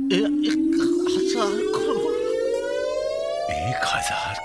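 A film-soundtrack riser effect: one steady tone climbing slowly and evenly in pitch, a dramatic sting for a stunned reveal. Brief voiced exclamations sound over it in the first second or two.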